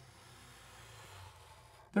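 Faint, steady scratch of a Sharpie marker's felt tip drawing a curved line on paper.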